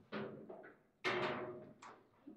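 Foosball table knocks: the ball and rod figures striking the table's hard playfield and walls. Two sharp knocks, about a second apart, each ring on briefly through the table body, and a lighter click follows near the end.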